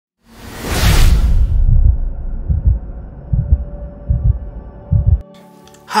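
Intro sound effect: a whoosh, then deep thumps like a heartbeat, about one a second, that cut off suddenly a little after five seconds.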